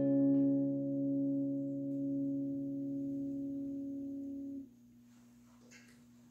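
Final chord of an electric guitar ringing out and slowly fading, then cut off suddenly a little over four and a half seconds in. A faint steady hum is left after it.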